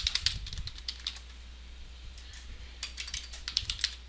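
Computer keyboard being typed on: quick runs of key clicks in two bursts with a short pause between, as a password is entered. A steady low hum runs underneath.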